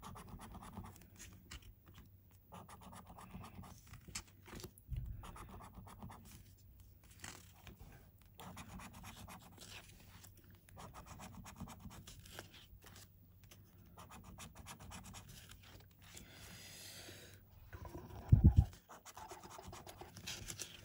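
A coin scratching the silver coating off a scratchcard, in repeated bouts of rapid scraping a second or two long with short pauses between them. There is a loud thump near the end.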